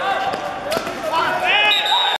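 Footballers shouting on an outdoor court, with the sharp thud of a football being struck about three-quarters of a second in. A louder, high-pitched shout comes near the end.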